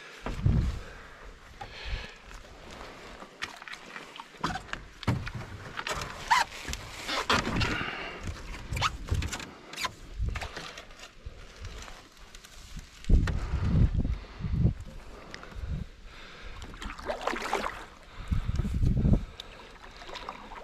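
Canoe being paddled across a pond: irregular paddle strokes splashing and dripping, with occasional knocks against the hull. A few louder low rumbles about two-thirds of the way in and again near the end.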